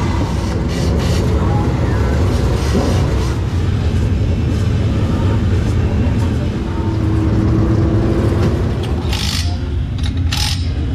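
Steady low rumble of engines running, with a short hiss near the end.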